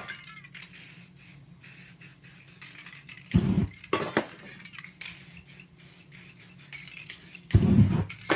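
Aerosol spray paint can spraying in a run of short hissing bursts onto canvas, with two low thumps, about three seconds in and near the end, the loudest sounds.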